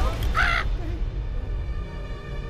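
Soft, sustained background music, a held drone over a low rumble, with a single short, harsh animal call about half a second in.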